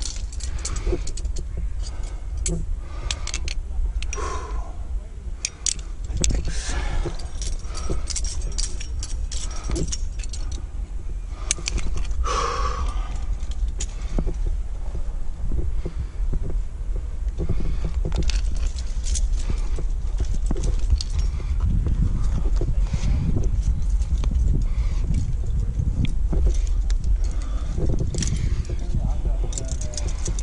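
Metal climbing gear, carabiners and nuts racked on a harness, clinking and jangling over and over as the climber moves, over a steady low wind rumble on the microphone. A brief vocal sound comes near the middle.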